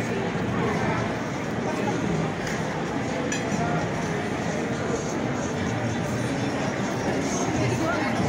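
Background babble of many people talking at once.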